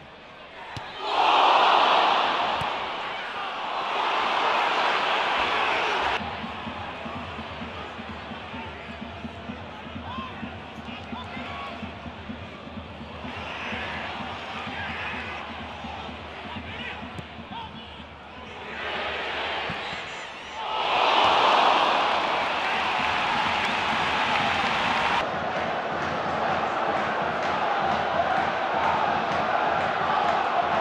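Football stadium crowd, a mass of voices that swells into loud roars about a second in and again about twenty-one seconds in. It drops away abruptly about six seconds in.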